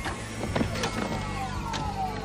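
Movie sound effect of a motorised mechanism whirring, with several tones gliding down in pitch, scattered clicks and clanks, and a low steady hum underneath.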